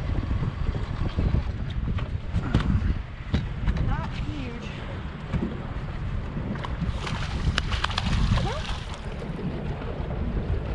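Wind buffeting the microphone over small waves slapping against an aluminium boat hull, with scattered sharp knocks; brief faint voice fragments now and then.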